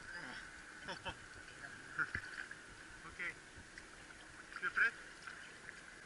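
Faint sloshing and light splashing of river water as a huge catfish is handled in shallow water, with a few short, soft voice sounds about three and five seconds in.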